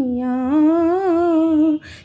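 A woman humming a long, wordless held note, unaccompanied, the pitch dipping at first, then rising with a slight waver before it breaks off shortly before the end.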